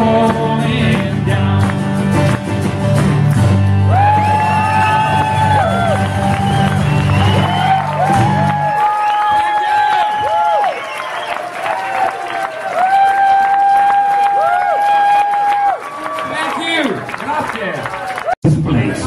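End of a live song on acoustic guitar: the strummed chords ring until about nine seconds in, long held high notes go on over and after them, and the audience claps and cheers as the song finishes.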